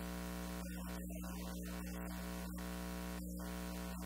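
Steady electrical hum with a stack of buzzing overtones over a hiss, unchanging throughout, with no speech audible: the sign of a faulty recording feed.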